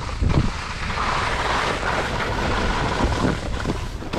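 Wind rushing over an action camera's microphone while skiing downhill at speed, with skis sliding over packed snow; a steady rushing noise with a heavy low rumble.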